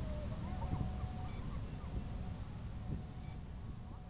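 Outdoor background noise: a steady low rumble, with a faint thin tone and a few short, faint high calls or beeps in the distance.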